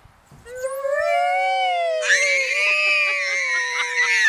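Two people's long, held cries while riding down a slide, starting about half a second in: two voices, one slowly gliding down in pitch and the other rising and then falling, growing brighter and louder from about two seconds in.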